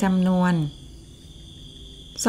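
A woman's voice says one word, then a steady high-pitched whine carries on alone under the narration's pause.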